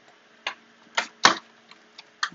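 Hand-cranked embossing machine feeding a plate-and-folder sandwich through its rollers: a few sharp clicks and knocks, the loudest about a second and a quarter in.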